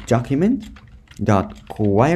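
Computer keyboard typing: a run of quick key clicks.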